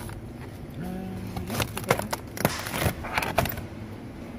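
Plastic meat trays being handled: a run of crackling clicks of packaging in the middle, over a low steady hum and a brief faint voice.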